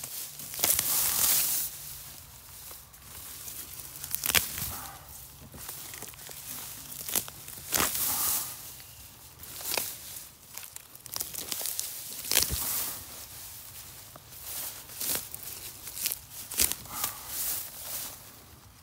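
A hand rummaging and pulling through dense grass littered with small plastic fragments, rustling and tearing the blades. It comes in irregular bursts, with a few sharp snaps, the loudest about a second in.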